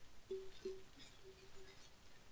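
Faint crinkling of a plastic garbage bag as hands dig through it, with a few short, faint steady tones in between.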